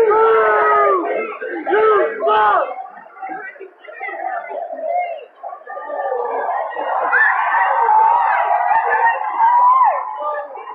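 Male stadium fans yelling long, drawn-out shouts over crowd chatter, one shouting through cupped hands. A long held yell opens, several shorter shouts follow in the first few seconds, and a second long, wavering yell starts about seven seconds in and breaks off with a sharp drop near the end.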